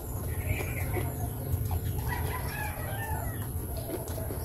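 A chicken calling in the background: a short call early on, then a longer wavering call from about two seconds in, over a steady low rumble.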